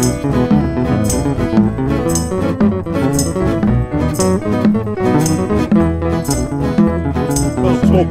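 Country-rock band instrumental break: a solid-body electric guitar plays the lead over bass, with a crisp beat about once a second.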